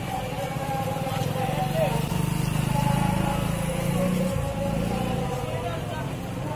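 A street crowd's mingled voices with motorcycle engines running among the people. One engine grows louder about two seconds in and drops back just past four seconds.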